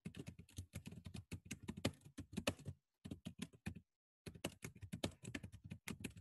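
Typing on a computer keyboard: quick runs of keystrokes, broken by two short pauses about three and four seconds in.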